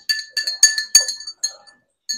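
Metal spoon clinking rapidly against the inside of a drinking glass as baking soda is stirred into water, each tap leaving a short glassy ring. The clinks pause briefly near the end.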